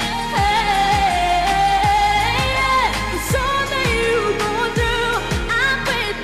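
A female singer's pop song with band backing: she holds long sung notes over a steady low drum beat, about two beats a second.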